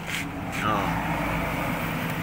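A motor vehicle engine running in the background with a steady low hum; about half a second in, a falling whine sweeps down in pitch.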